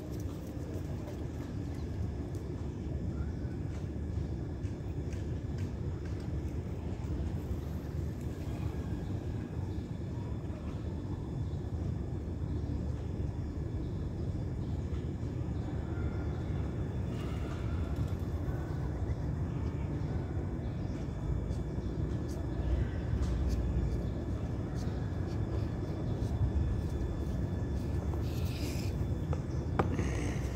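Outdoor background noise: a steady low rumble with no clear single source, and a few faint brief sounds about halfway through and near the end.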